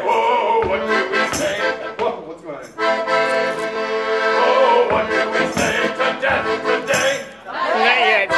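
A song performed live: an accordion plays held chords, with a voice singing over it near the start and the end.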